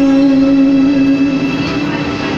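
A man singing a long held note into a karaoke microphone through the booth's speakers, with a slight waver. The note fades out about a second and a half in, leaving the karaoke backing music.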